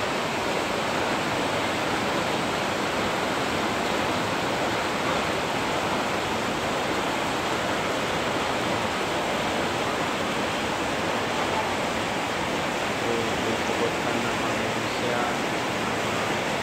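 Heavy rain falling hard in a steady, unbroken downpour.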